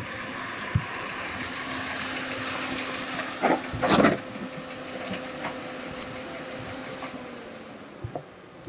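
Compact sedan's engine running as the car pulls into a parking space, a steady hum that stops shortly before the end. Two loud knocks come about halfway through.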